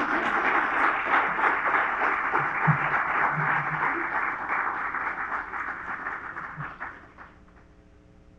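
Audience applauding steadily, then dying away about seven seconds in.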